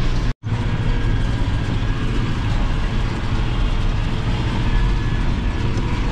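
Tractor engine running steadily under load with the discbine mower working, heard from inside the cab: a constant low drone. The sound cuts out completely for a split second about a third of a second in, then carries on unchanged.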